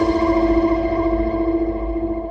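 Music: a long held chord that rings on and slowly fades, its brightness dying away first.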